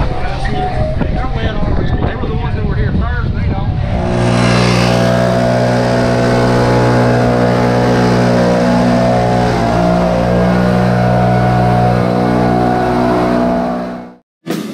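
A gas-engine backpack leaf blower comes in about four seconds in and runs at a steady high drone with a rush of air, blowing water off a wet concrete floor. Before it, people talk; the drone cuts off suddenly at the end.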